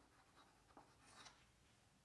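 Near silence with a few faint scratches of chalk on a blackboard as a word is written.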